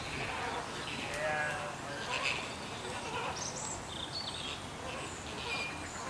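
A flock of flamingos calling, many short nasal honks overlapping one another.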